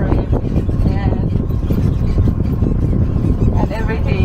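Open-sided tour tram driving along a farm track: a steady low rumble of its running gear and the rough road, with faint voices briefly at about a second in and near the end.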